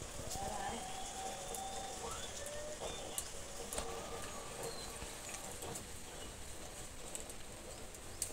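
Quiet outdoor ambience with faint bird calls and a few light clicks.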